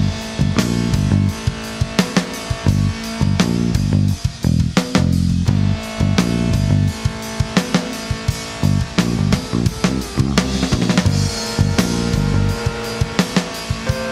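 Instrumental passage of a recorded rock song: a drum kit keeps a steady beat over a repeating low bass line, with guitar on top, and no singing.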